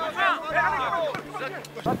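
Men's voices calling out during a football training drill: short shouted calls in the first second, then a name called just before the end.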